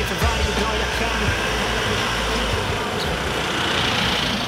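Nissan Terra SUV driving past on a paved road, its road and engine noise growing stronger toward the end, mixed with background music.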